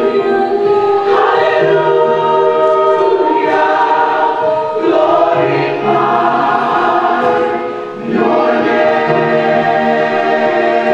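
Gospel choir singing a slow worship song in long held chords, phrase after phrase, with a brief drop in loudness between phrases just before the last couple of seconds.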